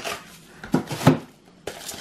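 Frozen food blocks in a plastic container and freezer bags knocking against the plastic freezer drawer and each other as they are set in place: several short, sharp knocks.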